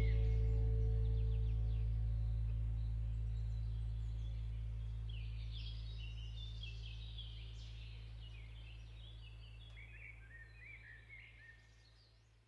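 The last low notes of an acoustic guitar piece ringing on and fading away slowly, while small birds chirp in the background for the second half.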